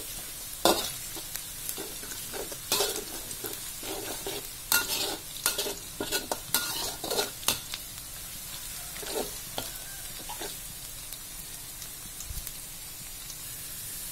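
Chopped shallots and garlic sizzling in hot oil in a metal wok while a metal spatula scrapes and knocks against the pan, being fried until browned and fragrant. The spatula strokes come often in the first half and thin out after that, while the sizzling runs on.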